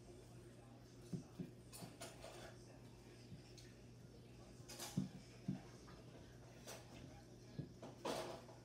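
Hands working a wet clay coil on a cloth-covered worktable, giving a few faint soft knocks and rubs over a steady low room hum.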